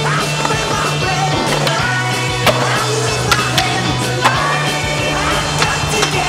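Skateboard wheels rolling on pavement, with several sharp clacks of the board from about two and a half seconds on, over a steady rock music soundtrack.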